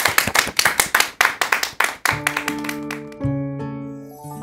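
A small audience clapping for about two seconds, then a short musical jingle of held chords that starts abruptly and fades slowly.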